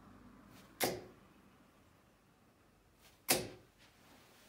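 Two steel-tip darts thud into a bristle dartboard, one under a second in and the next about two and a half seconds later, each hit sharp and short.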